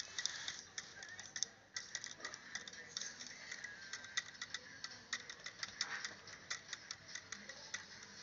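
Small RC toy helicopter with its rotors turning, giving a rapid, irregular run of light clicks as the blades knock against a wooden ruler held in their path.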